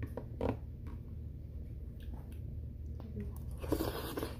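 Quiet eating sounds: soft chewing and a few faint clicks of a metal fork, over a steady low hum. Near the end comes a brief burst of rustling close to the microphone.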